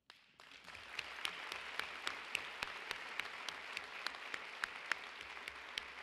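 An auditorium audience applauding: many hands clapping together, starting suddenly just after a pause and dying down near the end, with a few loud single claps standing out.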